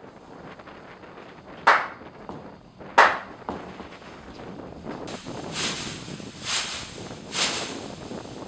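Outdoor wind noise on the microphone, broken by two sharp knocks about a second and a half apart, then three softer rustling bursts about a second apart.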